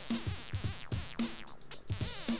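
Electronic drum loop with a synth melody from a DIY modular synth. The MS-20-style filter's cutoff is opened and closed in time with the drum hits by an envelope extracted from the loop, so each hit is followed by a falling filter sweep.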